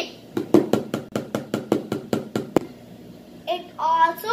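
A homemade drum made from a plastic yogurt tub, tapped with a stick: a quick run of about fifteen taps over two seconds.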